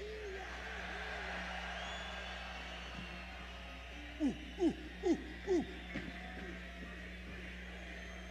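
A man's voice through the PA with a heavy echo effect: the tail of a yell dies away in repeats, then about four seconds in comes a run of four short calls, each falling in pitch, about two a second, fading out in echoes.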